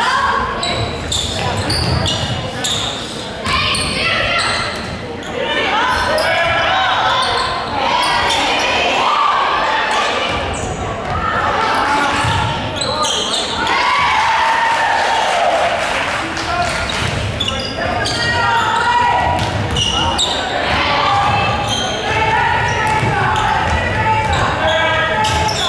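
A girls' basketball game in a gymnasium: a basketball bouncing on the hardwood court again and again, with players, coaches and spectators calling out, all echoing in the large hall.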